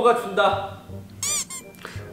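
A short high-pitched call that rises and then falls in pitch, about a second and a quarter in, after a man's speech.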